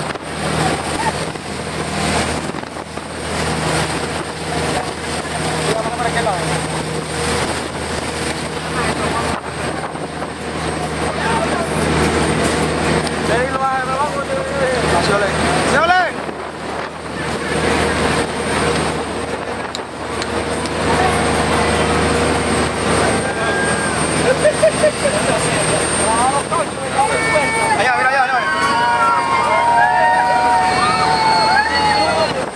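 Passenger boat's engine running steadily under wind buffeting and rushing water on the open deck, with passengers' voices over it that grow busier and louder near the end.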